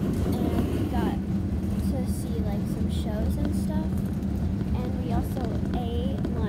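Steady low drone of an RV's engine and road noise heard inside the cabin, with faint voices over it.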